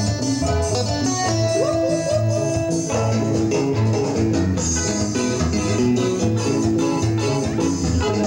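Live band playing Latin dance music without vocals: electric guitar over bass, keyboard and drum kit, with a steady, regular beat.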